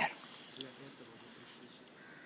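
Faint background ambience with distant birds chirping now and then.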